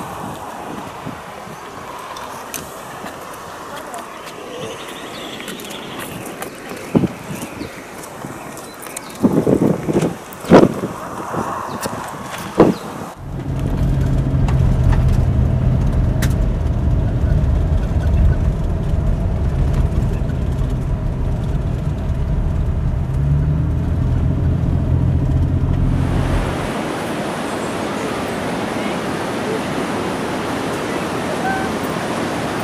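Car engine and road noise heard from inside the cabin while driving along a dirt road: a steady low drone that starts abruptly about a third of the way in and stops suddenly near the end. Before it there are a few sharp loud knocks over outdoor background. After it comes a steady hiss.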